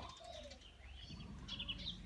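Faint birds chirping and calling in the background, with a quick run of short, high repeated notes in the second half.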